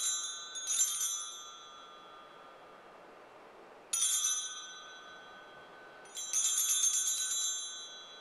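Altar bells, a cluster of small handbells, shaken in jingling rings: two short rings at the start, another about four seconds in, and a longer ring from about six seconds. They mark the elevation of the host at the consecration.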